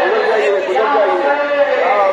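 Men's voices chanting loudly, several overlapping, in long drawn-out calls, over crowd chatter.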